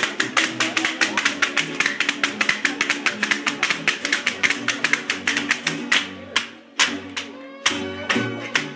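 A masked dancer stamps a rapid zapateado in huaraches on a concrete floor, the sharp foot taps running over string-band music. The footwork thins out and pauses briefly near the end, then starts again.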